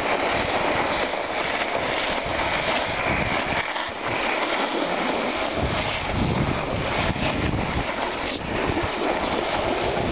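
Steady rushing noise of skis sliding over snow, mixed with wind buffeting the microphone. The low rumble drops away for a couple of seconds in the middle.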